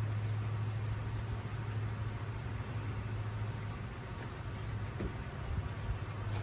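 Water pouring steadily from a plastic watering can's spout onto seed-starting trays of moist potting soil, gently watering in newly sown seeds. A steady low hum runs underneath.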